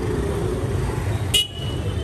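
Street traffic noise: a steady low rumble, with a short, high horn toot about one and a half seconds in.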